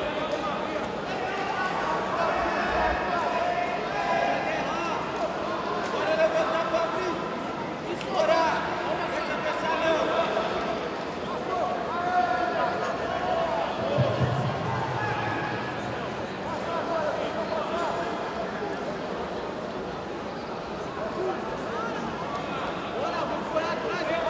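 Voices calling out almost without pause, no clear words, over the background noise of a sports hall.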